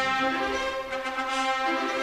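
Orchestral music with brass and strings playing held notes.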